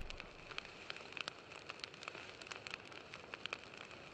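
Faint fire-crackle sound effect: irregular sharp pops, several a second, over a soft hiss.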